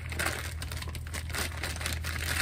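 Clear plastic packaging bag being torn open and crinkled by hand: a run of irregular crackles and rustles.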